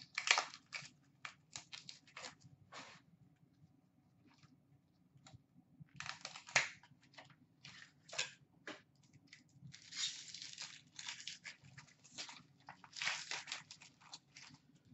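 Hands opening a pack of trading cards: a plastic wrapper crinkling and tearing, with scattered light clicks as the cards are handled. The sounds are faint and come in short bursts, with longer rustles about ten and thirteen seconds in.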